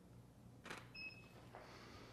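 A camera shutter click, then a short high electronic beep a moment later, typical of a studio strobe signalling that it has recycled after firing; otherwise near silence.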